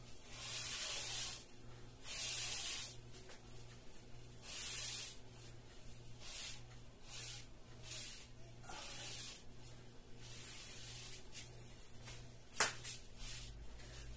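An old, worn sponge dragged down a wet-painted drywall board in a series of short, scratchy swishes, each under a second, the first few the loudest. A steady low hum runs underneath, and a sharp click comes near the end.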